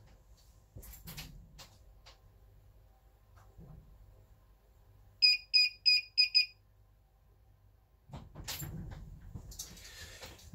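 Hikvision IDS-7216 AcuSense DVR's built-in buzzer giving its audible-warning bleep: a quick run of about five short high beeps, about four a second. It signals that the DVR's face detection has picked up a face. A few faint knocks come before it.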